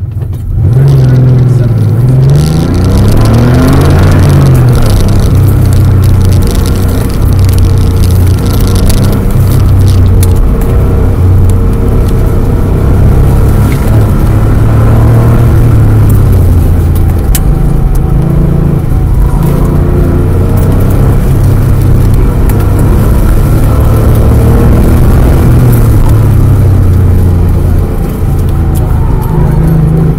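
Air-cooled 3.2-litre flat-six of a 1988 Porsche Carrera 3.2, heard from inside the cabin, launching hard about half a second in. It then runs at high load with its revs rising and falling over and over through shifts and lifts on an autocross course.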